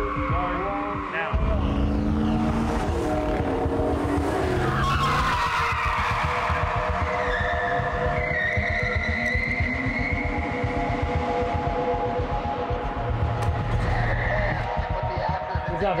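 Cars driving hard with engines running and tyres squealing and skidding, including a long falling squeal about five seconds in.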